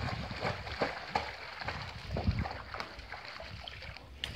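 A dog paddling across a swimming pool, with light, irregular splashes of water, under a low rumble of wind on the microphone.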